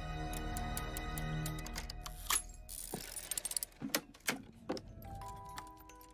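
Sustained background score with a low drone, then several sharp mechanical clicks and a short scrape as the key of an ornate music box is turned and its lid lifted; near the end the music box begins plinking out its tune in short high notes.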